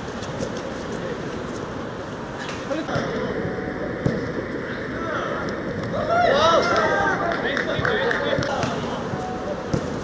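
Footballers shouting and calling to each other across the pitch, busiest from about six seconds in, with a few short thuds of the ball being kicked.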